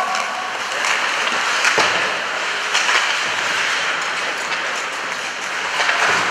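Applause, holding steady with a few louder swells.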